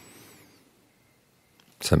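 A pause in a man's talk: a faint, brief hiss with thin high arching tones just at the start, then near silence until the man begins speaking again near the end.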